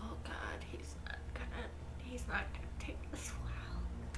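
Soft whispered speech in short fragments over a low steady hum.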